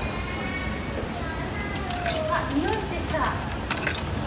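Coins going into a coffee vending machine's coin slot: a few short, sharp clicks over a steady low hum, with a brief voice about halfway through.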